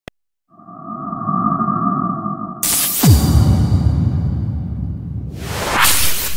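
Electronic logo-intro sound design: two steady humming tones over a low rumble, cut off by a sudden loud hit about two and a half seconds in, followed by a deep falling boom and a low pulsing bed. A swell of hiss rises near the end.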